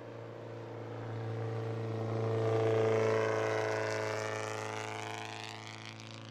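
Mitsubishi Lancer race car passing at speed with its engine held at steady high revs. It grows louder to a peak about halfway through, then fades as the car moves away.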